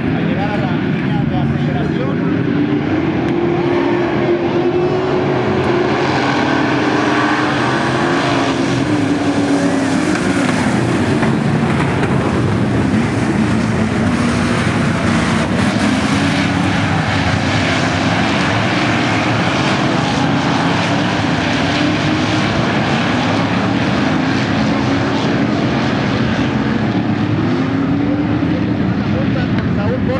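A pack of V8 dirt-track stock cars racing, their engines running loud and continuous, the pitch rising and falling as they throttle through the turns and past.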